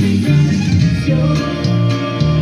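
Electric bass playing a norteño bass line of short, quickly changing notes, along with the rest of a norteño band's music.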